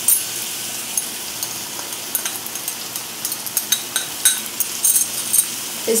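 Cluster beans frying in oil in a non-stick pan: a steady sizzle with scattered sharp crackles and pops, which come more often from about two seconds in.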